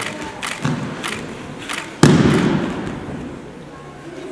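A person being thrown and landing on the training mats with one loud thud about two seconds in, which rings on briefly in the hall. A few short, sharp sounds of the grappling come before it.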